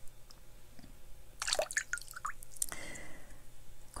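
Water poured from a hand-held shell, falling into water below as a few quick drips and plinks, then a short trickle near the end.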